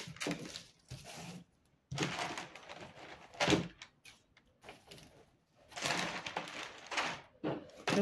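Sheets of brown pattern paper rustling and crinkling as they are handled, in several short irregular bursts with quiet gaps between.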